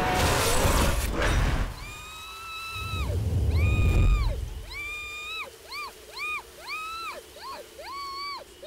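Film soundtrack: a loud crash-like hit with music in the first second, then a run of high-pitched whining tones, each rising, holding and falling away, coming shorter and quicker toward the end, over a low rumble a few seconds in.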